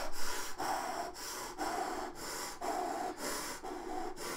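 A man breathing out in short puffs through pursed lips, about two a second in a steady rhythm.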